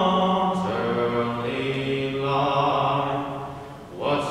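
Unaccompanied singing of the national anthem during the presentation of colors, a voice holding long notes, with a short break just before the end.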